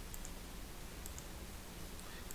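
Faint clicks of a computer mouse, two quick pairs, one near the start and one about a second in, over a low background hiss.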